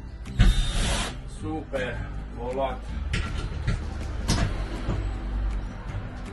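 Cordless drill driver running in short bursts, driving a screw through a wooden ceiling strip into the van's metal frame. The loudest burst comes about half a second in, with shorter ones around three and four seconds in.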